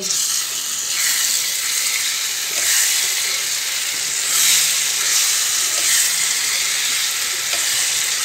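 Potato cubes in masala gravy sizzling in a kadai while a wooden spatula stirs them, the sizzle swelling every second or two as the potatoes are turned over.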